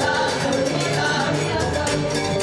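Live Venezuelan gaita music played by a band with hand drums, a steady, driving dance rhythm under sustained pitched notes.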